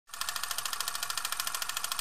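Film projector running with a rapid, even clatter and hiss.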